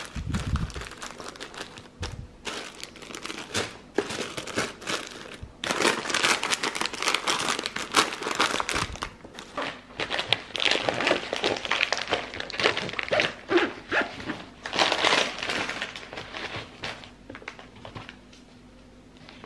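Aluminium foil and plastic snack wrappers crinkling and rustling in irregular bursts as food is packed into an insulated lunch bag, with a soft low thump near the start.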